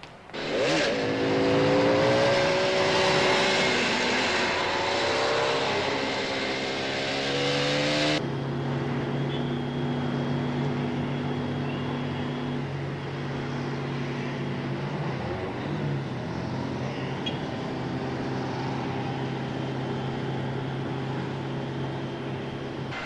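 Motorcycle engines revving and accelerating, loud and rising and falling in pitch, cutting off abruptly about eight seconds in. A car engine then runs steadily, heard from inside the car.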